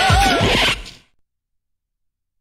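The tail of a station jingle: music with a singing voice and a brief swoosh effect, fading out about a second in and giving way to dead silence.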